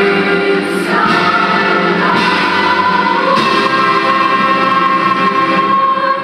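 Children's choir singing, with a long high note held steady through the second half.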